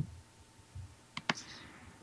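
A pause with faint room tone and two short, sharp clicks a fraction of a second apart, a little past a second in.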